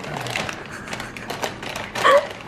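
A paper takeout bag and paper wrappers rustling and crinkling as a hand reaches into the bag: a quick, uneven run of crackles.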